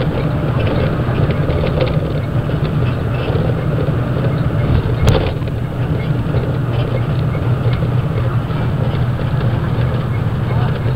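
Steady low drone of a bus's engine and road noise heard from inside the passenger cabin, with one sharp click about five seconds in.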